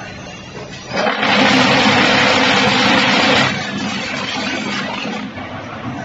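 QT4-25 automatic concrete block making machine running its cycle: a steady low machine hum, with a loud burst of harsh machine noise starting about a second in and lasting about two and a half seconds before dropping back.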